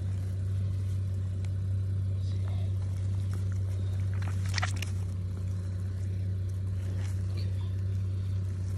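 A steady low drone of an idling engine runs throughout. About four and a half seconds in, a short burst of handling noise is heard as a hand works inside the carcass.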